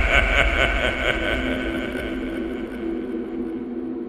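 Dramatic background-music sting dying away: a fast-fluttering high texture and a deep rumble fade out together while a few low sustained tones keep sounding.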